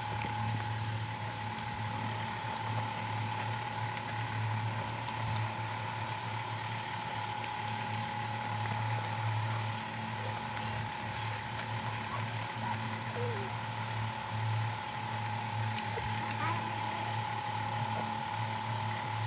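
A steady low hum with a constant higher thin tone over it, from a running motor or electrical appliance, with faint small clicks and smacks of eating by hand scattered through.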